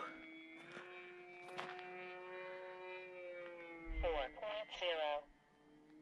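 Electric motor and propeller of a Durafly Brewster Buffalo RC warbird in flight: a faint, steady whine with a clear pitch. It cuts out suddenly shortly after a short burst of speech near the end.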